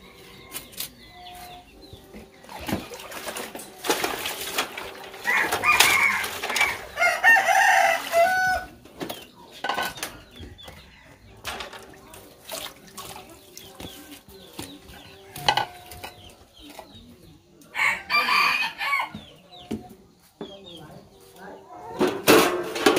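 A rooster crowing twice, a long crow about five seconds in and a shorter one near the end, over scattered clinks of enamel plates and metal trays being washed by hand.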